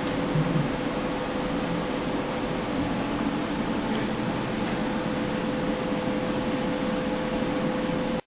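Steady fan-like hiss and hum with one faint, constant tone, with no rhythm or change throughout.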